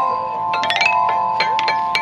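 Metal chime bars of an outdoor playground metallophone struck many times in quick, irregular succession, several notes ringing on and overlapping.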